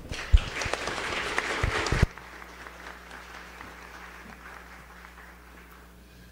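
Audience applauding for about two seconds, with one sharp knock standing out just after it begins. The applause then cuts off suddenly, leaving faint room noise with a low hum.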